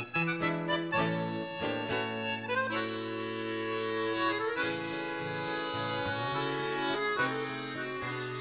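Accordion and classical guitar playing chamamé. Quick short notes come first. From about three seconds in, the accordion holds long chords, then the notes move quickly again near the end.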